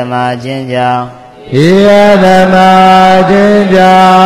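A Buddhist monk chanting Pali scripture in a man's voice, in a drawn-out recitation style. A short chanted phrase comes in the first second, then after a brief pause a long tone is held nearly level in pitch through the rest.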